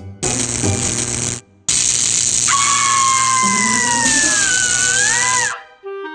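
Cartoon electric-shock sound effect: a loud crackling electrical buzz in two bursts, the second long, with a wavering held yell rising through its latter half. It cuts off suddenly near the end.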